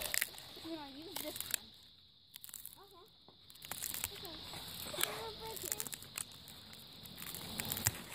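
Faint, distant children's voices calling out in short bursts, mixed with scattered clicks and rustles close to the microphone.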